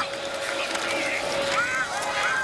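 Stadium crowd noise at a football game, with a high shouted voice from the field near the end as the offense comes to the snap.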